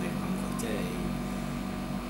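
Speech with a steady low hum underneath.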